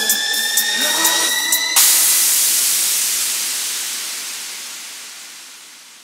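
Ending of an electronic dance remix: rising synth tones with the bass dropped out, then, a little under two seconds in, a sudden burst of white-noise hiss that fades away steadily.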